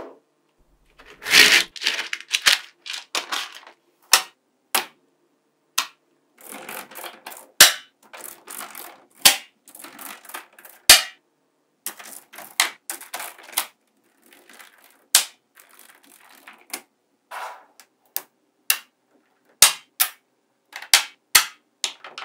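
Small neodymium magnetic balls clicking and snapping together as sheets of them are pressed, joined and folded by hand: sharp single clicks at irregular intervals between stretches of softer rattling as the balls shift against each other.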